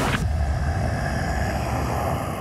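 A steady low rumble, following a burst of hiss that cuts off just after the start.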